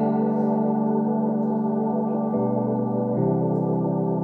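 Instrumental passage of held keyboard chords with no singing; the chord changes about two and a half seconds in and again just after three seconds.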